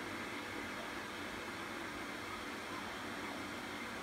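Steady, even hiss of room background noise, like a fan running, with no other sound standing out.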